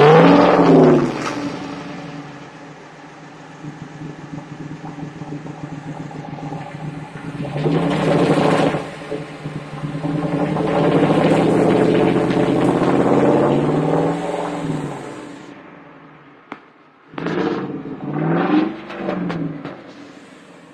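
Dodge Ram 1500's 5.7-litre Hemi V8 with its stock mufflers removed and the exhaust dumped under the truck, revved up and back to idle several times. There is a longer held rev in the middle and three quick blips near the end.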